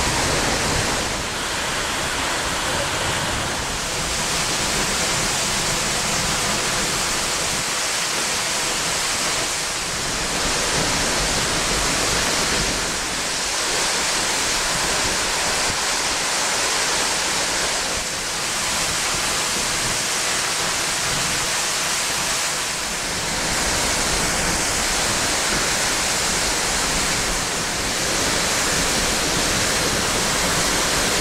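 Tall waterfall falling onto rocks and pool at close range: a loud, steady rush of water and spray.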